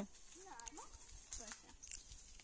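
Faint background voices, a couple of short soft utterances, with a few light clicks.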